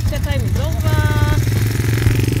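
Honda quad bike's engine running with a steady, fast low throb, while a voice briefly calls out over it about a second in.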